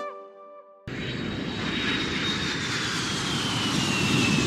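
The last notes of a cheerful keyboard tune fade out. About a second in, a jet-like whoosh sound effect cuts in suddenly: a loud rushing noise with a high whine that slowly falls in pitch, like a plane passing.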